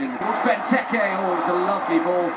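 A man's voice talking continuously.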